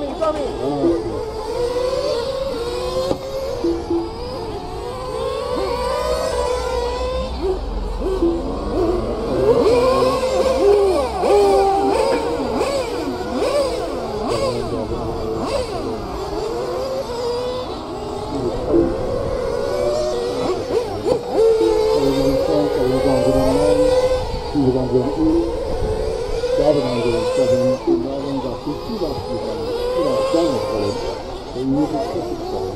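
Several radio-controlled racing cars' motors revving up and down continuously, overlapping, as they race round the track.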